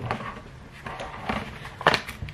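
A small Pringles can being opened by hand: the plastic lid pulled off with soft handling noises, then a sharp crack near the end as the foil seal starts to come away.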